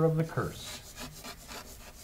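Chalk writing on a chalkboard: a run of short, faint scratches and taps as the words are written.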